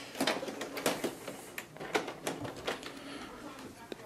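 Scattered sharp plastic clicks and knocks from the body of a Canon Pixma MG6120 inkjet printer as its top scanner unit is lifted open to get at the ink cartridges.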